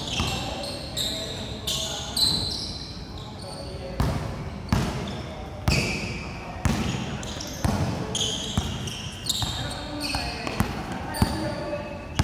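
A basketball bouncing on a hard court, struck about once a second in an uneven rhythm, with short high squeaks of sneakers on the court surface between the bounces.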